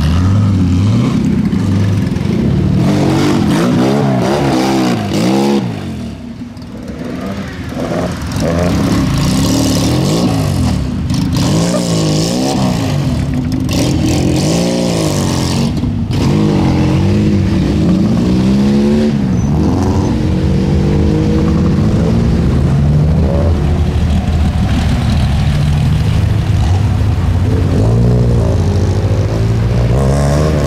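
Historic rally cars taking a snowy hairpin one after another, their engines revving up and down repeatedly through the gears, with a brief lull about six seconds in.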